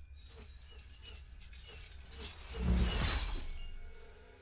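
Soundtrack of a TV episode playing: quiet background, then a brief rushing noise that swells about two and a half seconds in and fades away.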